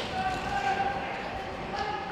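Hockey players' voices in an ice arena, with a held, steady call over the chatter and a few faint knocks of sticks or skates on the ice.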